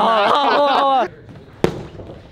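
A single sharp thud of a padded boxing glove punching into a man's stomach, about a second and a half in, after a loud drawn-out voice.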